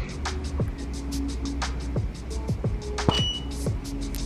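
Background music with a steady beat: quick, evenly spaced hi-hat-like ticks over held bass notes, with a brief high beep about three seconds in.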